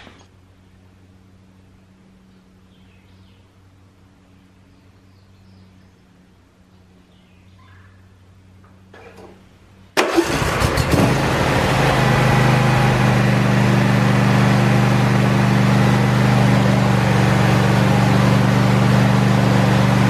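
Quiet for the first half, with only a faint low hum. About halfway in, a John Deere S130 lawn tractor's 22 hp, 724 cc Briggs & Stratton V-twin engine starts, rises in pitch briefly, then runs steadily and loudly.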